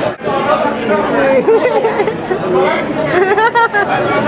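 Several people talking at once in a crowded room: loud, overlapping conversation, briefly dipping just after the start.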